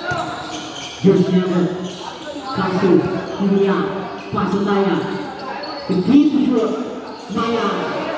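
A basketball being dribbled on a hard court floor, with players' voices calling out loudly over it in several short shouts.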